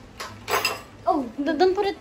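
A brief clatter about half a second in, as of something hard knocked or set down on a table, followed by a high-pitched child's voice over the second half.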